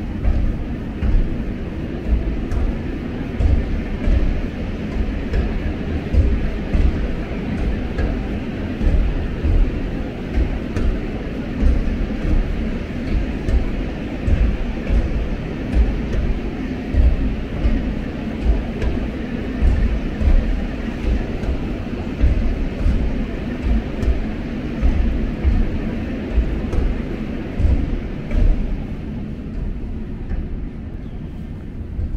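Low thuds about once a second over a steady rushing noise: the footsteps and handling of someone walking with a handheld camera.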